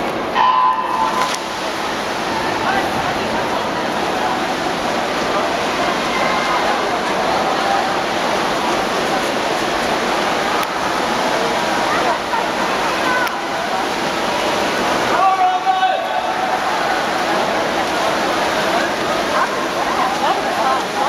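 Backstroke swimmers splashing through a race, a steady wash of water noise with voices and shouts of spectators over it. A short tone sounds about half a second in, and there is a louder shout around fifteen seconds in.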